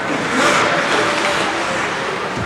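Ice hockey skate blades scraping and gliding on the ice during play, a hissing scrape that swells about half a second in.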